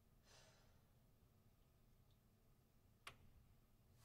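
Near silence: a soft breath out about half a second in, and a faint click near the end.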